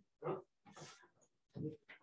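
Brief, indistinct human vocal sounds: about three short bursts, two voice-like and one breathy, with no clear words.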